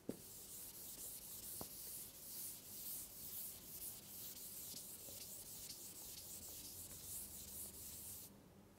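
Chalkboard eraser being rubbed back and forth across a green chalkboard to wipe it clean, a faint scratchy swishing in repeated strokes that stops at the end.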